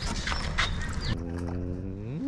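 A domestic animal's long call, starting a little past halfway, held on one pitch and beginning to rise at the end. Before it come a few short knocks and rustles.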